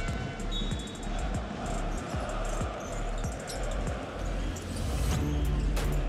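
A basketball being dribbled on a hardwood arena court, low thuds over a steady haze of crowd noise.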